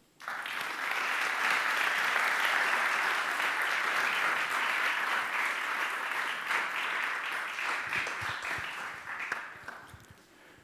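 Audience applauding, starting suddenly and dying away over the last couple of seconds.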